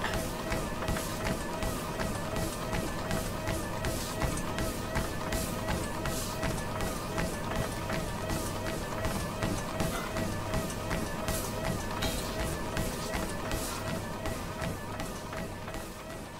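Footfalls of someone running, about two a second, over music with a steady hum; it all fades away over the last two seconds.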